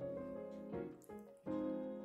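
Gentle background piano music, a slow melody of held notes.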